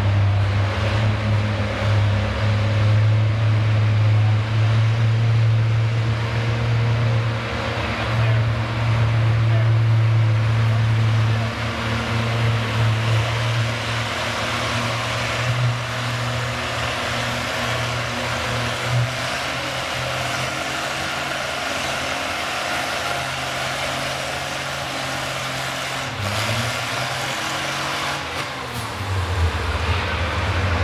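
Oliver 77 Row Crop tractor's six-cylinder engine working hard under load, pulling a weight-transfer sled: a steady low drone, loudest for the first ten seconds or so, then easing a little. Its pitch shifts near the end.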